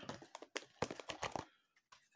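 Blu-ray case being picked up and handled: a quick run of small clicks and taps for about a second and a half, then it goes quiet.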